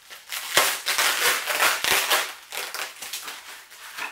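Clear plastic packaging bag crinkling and crackling as hands pull it open, loudest and densest in the first two seconds, then lighter crinkles.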